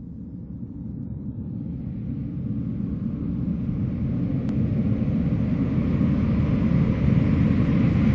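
A low rumble that fades in and swells steadily louder, gradually filling out higher up, with a faint click about halfway through.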